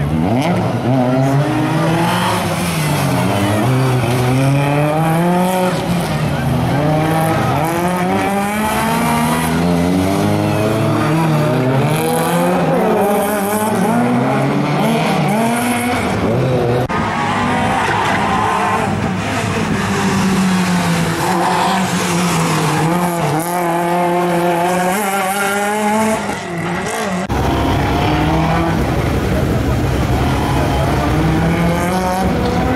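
Rally car engine revving up and down again and again, its pitch rising and falling every second or two as the car is driven hard through a tight tyre slalom, with tyres squealing.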